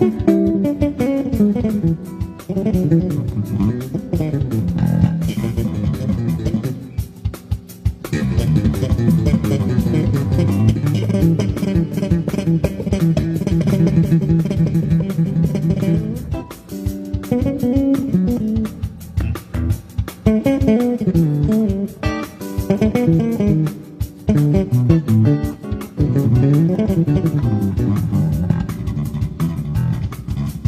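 Electric bass guitar played in fast runs of notes that climb and fall, with short breaks about seven and sixteen seconds in.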